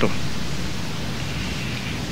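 Steady hiss of the recording's background noise, with a faint low hum underneath, between sentences of a spoken talk.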